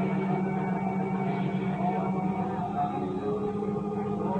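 A congregation's many voices praying and praising aloud at once over a low, steadily held musical chord, during an altar call for receiving the Holy Spirit.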